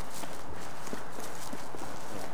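Footsteps on a hard station platform, faint irregular steps over a steady background hiss.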